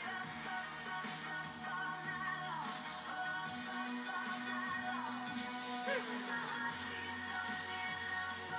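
A baby shaking a small plastic maraca over music playing in the room: a couple of brief rattles early on, then a quick burst of rattling about five seconds in.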